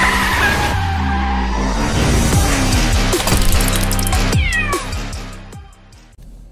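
Animated intro sting: music with sound effects of car tyres screeching and a cartoon cat meowing, fading out near the end.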